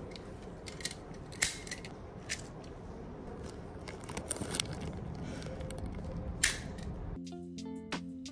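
A jammed stapler being worked by hand: several sharp metal clicks, a staple stuck inside, over steady background hum. Near the end background music with guitar comes in abruptly.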